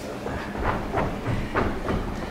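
Quick footsteps of two people hurrying across a wooden theatre stage: a rhythmic clatter of shoes on the boards, about two to three steps a second.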